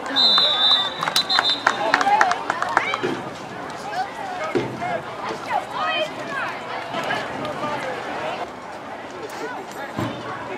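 A referee's whistle blown once, for about a second, right after the tackle to end the play, over the voices of spectators. A quick scatter of sharp claps follows in the next couple of seconds.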